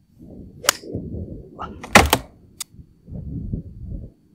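An iron clicks sharply against a golf ball about two-thirds of a second in, over wind rumbling on the microphone. About two seconds in comes a louder, heavier impact, the loudest sound here, followed by a smaller click.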